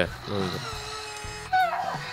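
Hatchimals WOW Llalacorn interactive toy making its electronic creature sounds: a held steady tone, then a short squeaky call that glides up and down near the end, the sounds it makes while settling into sleep.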